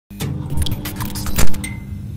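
Logo intro sting: a low steady drone under a quick run of sharp clicks, building to one loud hit about one and a half seconds in, followed by a short high ring.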